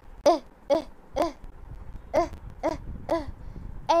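A child's voice saying the short "e" sound of the letter E, six short syllables in two sets of three, each falling in pitch.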